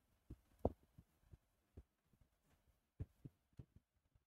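Near silence broken by faint, irregular soft low thumps, about eight of them, the strongest about two-thirds of a second in.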